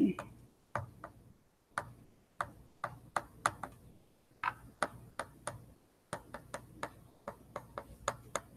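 Light, irregular clicks and taps, about three a second, of a stylus striking a writing tablet as words are handwritten.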